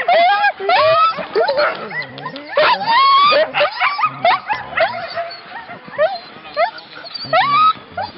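Harnessed sled dogs (huskies) yelping, whining and howling, many voices overlapping, the excited clamour of a team waiting at the line before a run. The din eases for a couple of seconds about five seconds in, then picks up again.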